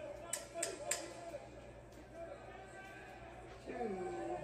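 Three sharp smacks in quick succession, about a third of a second apart, starting about a second in. They come from a fight broadcast of two fighters clinching, heard through a TV speaker over faint arena voices.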